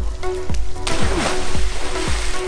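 A person diving headfirst into a swimming pool: a sudden splash about a second in, followed by rushing, sloshing water, over background music with a steady beat.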